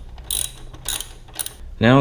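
Socket ratchet clicking in a few short, uneven bursts as a nut is run onto a motorcycle's rear-shock mounting bolt.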